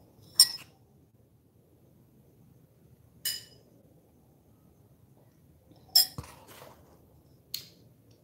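Ceramic mug clinking: four sharp clinks, each with a brief high ring, spread over several seconds as the mug is handled.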